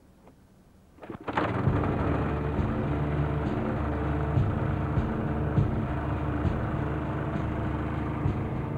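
Small portable petrol generator (Mase LX 1200 M) starting up about a second in and then running steadily with a low hum.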